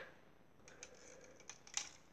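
Faint clicks of plastic Lego Bionicle parts as a figure's leg is swung on its joints: a few small ticks, the loudest near the end.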